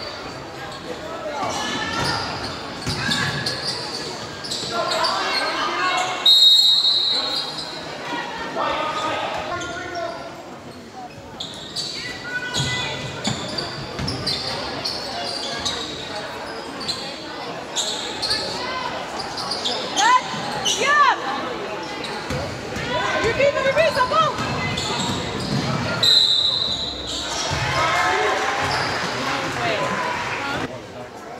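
Basketball game in an echoing gym: the ball bouncing on the hardwood, sneakers squeaking, and players and spectators calling out. A referee's whistle blows briefly about six seconds in and again near the end.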